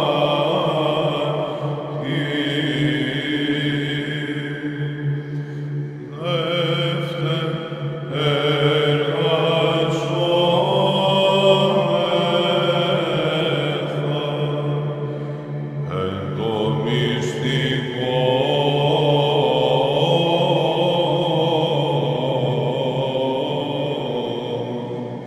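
Greek Orthodox Byzantine chant: a male voice sings a slow, ornamented melody over a steady, low held drone (the ison), with short breaks between phrases.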